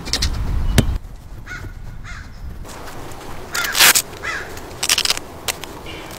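A few soft taps of a ball on artificial turf in the first second, then a crow cawing several times, loudest a little past halfway.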